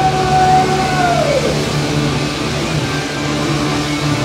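Live rock band playing loudly with electric guitars and a strong bass line. A long held high note slides down in pitch a little over a second in, then the band carries on in a dense, ringing wash.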